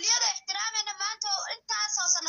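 A man's voice speaking, with no other sound.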